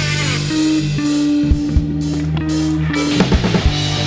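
Live rock band playing an instrumental passage with no vocals: electric guitar through a Hiwatt T20 HD tube amplifier, with bass and a drum kit. Long held notes run under regular drum and cymbal hits, which come thicker near the end.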